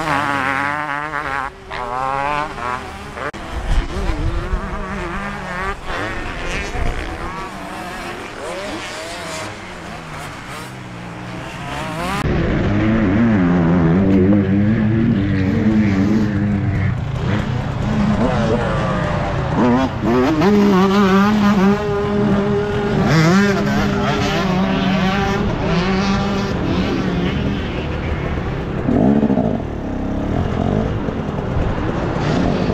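Dirt-bike engines revving up and down as bikes ride past, then, about twelve seconds in, a KTM 250 SX two-stroke engine heard close up from on the bike, repeatedly revving up and backing off as it is ridden round the track.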